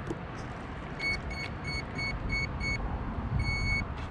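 Electronic beeps from the RC race boat's onboard electronics: six short beeps at one pitch, about three a second, then one longer beep, over a low rumble.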